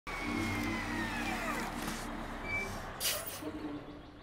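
Cartoon crane vehicle's engine running with a steady low hum, with a whistling tone that falls in pitch over the first second and a half and a short air-brake hiss about three seconds in.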